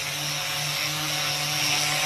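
Electric angle grinder with a round sanding pad, running steadily while sanding a carved wooden door panel: a constant motor whine over the hiss of the abrasive on the wood.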